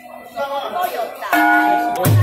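A bell struck once, about a second and a third in, ringing on with several steady clear tones; voices before it.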